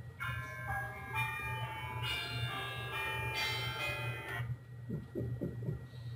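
Mobile phone ringtone: a chiming, bell-like melody of changing notes that plays for about four seconds and then cuts off, signalling an incoming call.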